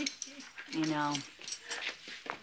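A person laughing between a few spoken words, with a few light clicks.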